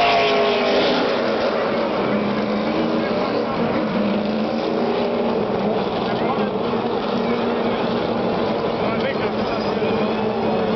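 NASCAR race trucks' V8 engines running at speed around the track and along pit road, one passing close near the start with its pitch falling away, then a steady engine drone.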